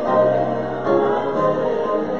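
Choir singing held chords during a church service.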